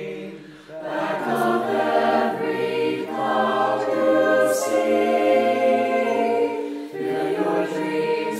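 A mixed-voice choir of young men and women singing held chords in several parts. The sound thins and drops in the first second, then the voices swell back in together, with a sung 's' hiss about one and a half seconds in and again near the middle.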